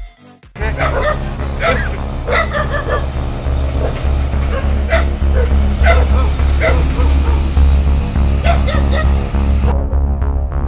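Music with a steady bass beat starts about half a second in. A dog barks and yips over it again and again.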